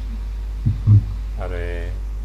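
Steady low hum on the recording, with two dull thumps in quick succession just under a second in and a short drawn-out vowel from a voice near the end.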